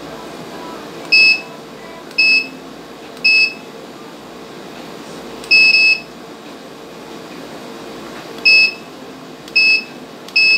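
Universal washing-machine control panel beeping as its buttons are pressed: six short, high electronic beeps at uneven intervals, the one about five and a half seconds in lasting longer.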